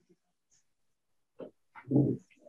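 Silence on the call line for over a second, then a few short wordless voice sounds close together near the end, like a brief chuckle or breaths.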